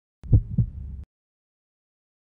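A low double thump in a heartbeat rhythm, a lub-dub heard once about a quarter second in, with a short low rumble after it that stops abruptly about a second in.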